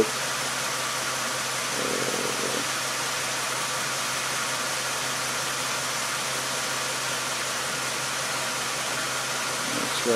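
Car engine idling steadily.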